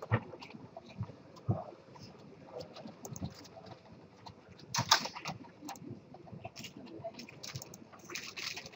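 Faint, scattered clicks and taps of a computer mouse and keyboard being worked, with a couple of low desk knocks near the start and a busier cluster of clicks about five seconds in.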